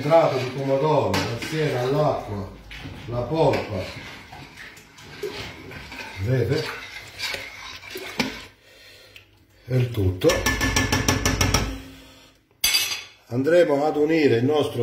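A ladle stirs and scrapes inside a large stainless-steel pot of tomato sauce, with clinks against the pot. About ten seconds in there is a fast rattling run of scrapes lasting a second or two.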